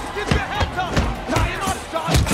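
Punches landing in a cage fight, four or five sharp hits in quick succession, over a shouting crowd and background music.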